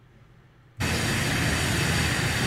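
Faint room tone, then about a second in a loud, steady rushing noise cuts in suddenly: the outdoor background of a backyard recording, such as wind on the microphone.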